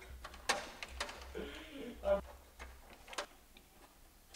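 A few sharp, irregularly spaced clicks and knocks as hands work inside an open desktop computer tower, over a low steady hum.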